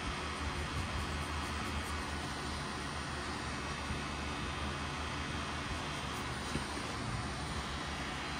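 Pen-style rotary tattoo machine running steadily with a continuous motor hum as its needle cartridge works colour into the skin.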